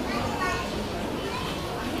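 Steady background din of a busy indoor children's play area: children's voices and chatter mixing together, with no single loud event.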